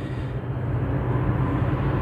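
A vehicle engine running steadily: a low hum with a rushing noise, slightly louder from about half a second in.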